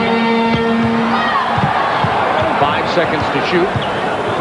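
Arena crowd noise over live basketball play: a held note of arena music stops about a second in, then the ball bounces on the hardwood floor and sneakers squeak in short chirps.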